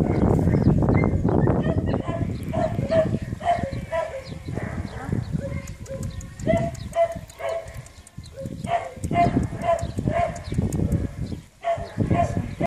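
Short, pitched dog yelps repeating about two to three times a second, with loud rustling and handling noise on the microphone in the first two seconds.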